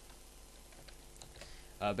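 A few faint computer keyboard keystrokes over a low background, then a man's brief 'uh' just before the end.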